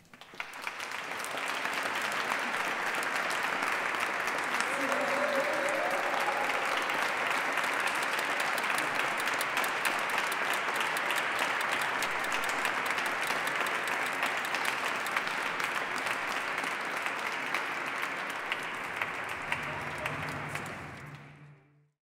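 Audience applauding at the end of a song, starting suddenly, holding steady for about twenty seconds, and fading out near the end.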